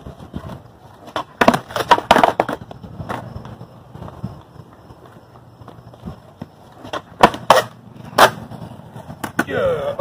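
Skateboard wheels rolling on concrete, with clusters of sharp board clacks against the ground, about a second and a half in, and again about seven to eight seconds in. The clacks come from finger-flip attempts that do not work out.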